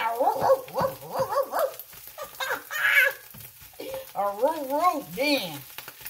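A woman's wordless vocal sounds and laughter, over corned beef hash sizzling in a frying pan as a spatula stirs it.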